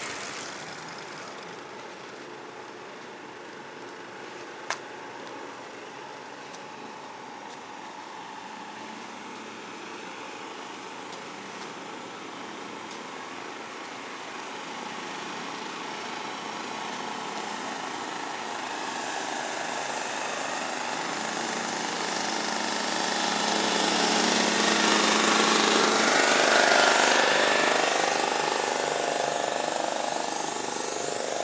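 Outdoor ambience with motor-vehicle engine sound: a motorcycle fading away at the start, one sharp click a few seconds in, then an engine growing louder over the last ten seconds or so and easing off again near the end.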